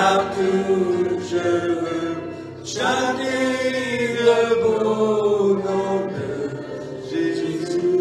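Two men singing a slow worship song into microphones, in long held notes. A new, louder phrase starts about three seconds in and slowly falls in pitch.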